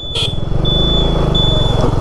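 Motorcycle engine running steadily while riding, a fine rapid pulsing with road and wind noise. A thin high-pitched tone sounds on and off above it.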